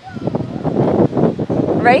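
Wind buffeting a clip-on microphone: a rough rushing noise that rises and falls unevenly, with a woman's voice coming in near the end.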